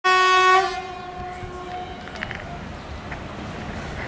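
WAP-4 electric locomotive's horn sounding one short, loud blast that cuts off about half a second in, its echo fading over the next second. The steady low rumble of the oncoming train runs underneath.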